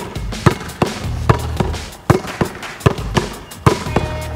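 A basketball bouncing hard on a court in a steady rhythm of paired bounces, about ten in all: one dribble, then a between-the-legs crossover, repeated. Background music with a low bass line plays underneath.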